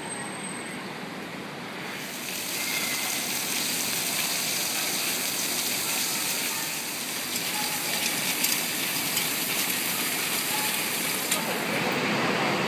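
Fountain jet splashing down into a shallow pool: a steady rush of falling water that comes in about two seconds in.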